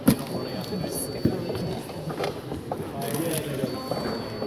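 Indistinct background chatter of several people, with footsteps and knocks on a wooden floor and one sharp clunk right at the start.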